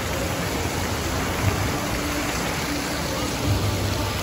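Water of a wave pool rushing and splashing steadily, with a spray fountain, and faint voices of swimmers in the background.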